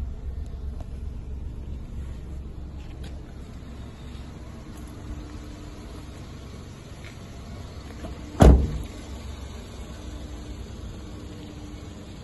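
A car door shut once, about eight and a half seconds in, a single loud impact over a low steady background rumble.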